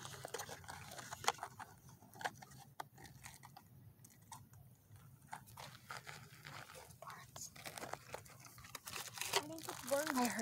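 Irregular crunching footsteps on a gravel and dirt path through dry grass, with voices starting up near the end.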